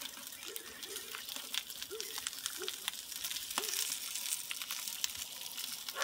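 Ribeye steak searing over hot charcoal on a small portable grill: a steady sizzle with frequent small crackling pops.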